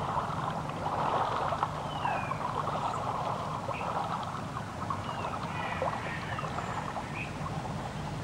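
River water flowing and gurgling in a steady rush, with a few faint short high chirps scattered through it.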